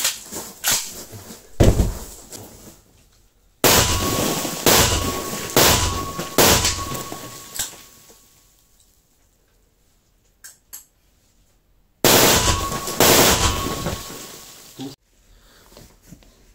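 AK-200 rifle in 5.45 mm firing 7N6 rounds from a bare muzzle with no flash hider or suppressor, with a loud room echo behind each shot. One shot comes about two seconds in, then a string of about five single shots roughly a second apart, and after a pause another string of about four.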